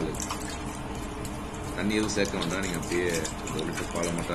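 Milk poured in a thin steady stream into a nonstick pot, splashing as the pool in the pan fills.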